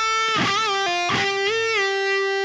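Jackson electric guitar playing a slow single-note lead phrase: a held note is bent up and back down, drops briefly to a lower note after a pull-off, then is bent up and down again and held.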